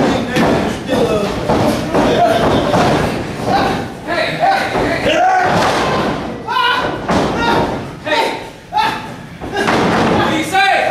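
Several thuds of wrestlers' bodies hitting the ring canvas, with raised voices shouting over them.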